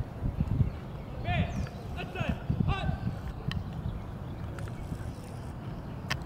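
A few short, distant calls with quickly bending pitch, about one to three seconds in, over a steady low rumble.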